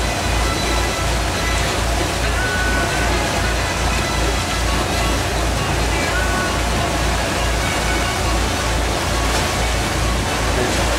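Steady loud running noise of a boat's engine, with a low, even throb about two to three times a second.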